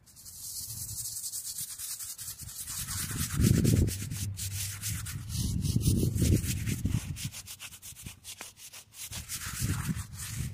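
A hand-held bristle brush scrubbing a weathered stone headstone in rapid scratchy back-and-forth strokes. A few louder low rumbles come about three and a half and six seconds in.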